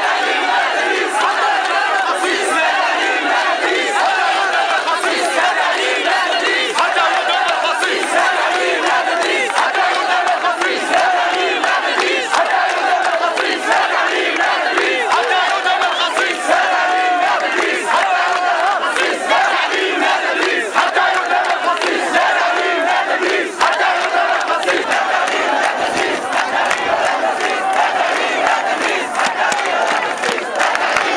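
Large crowd of men shouting together, many voices overlapping at a steady, loud level.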